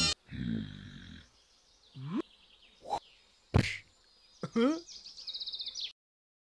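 Cartoon sound effects: a series of short grunts and rising squeaky vocal sounds, ending in a quick, high chirping trill that cuts off suddenly.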